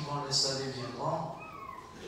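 A man's voice speaking, words not made out, trailing off into a quieter stretch with a short falling vocal glide near the end.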